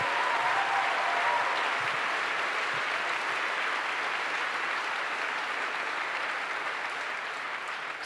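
Audience applauding in a long, even round that slowly dies away.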